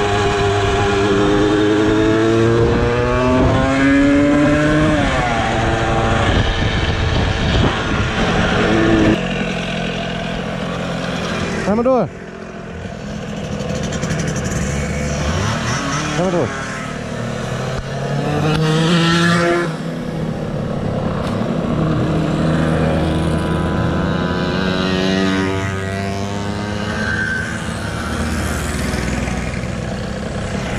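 Small 50cc moped engines running under way, heard from the rider's own machine. The engine pitch climbs and falls again and again as the throttle opens and closes and the gears change, with wind on the microphone.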